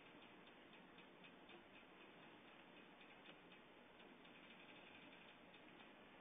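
Near silence with faint, irregular clicks of computer keyboard keys being typed.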